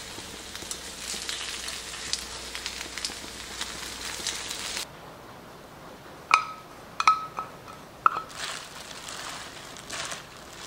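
Shredded potato pancakes sizzling and crackling as they fry in oil. About halfway the sizzling stops suddenly, followed by a few sharp ringing clinks of a spoon against a glass mixing bowl and then the rustle of leafy greens being tossed by hand.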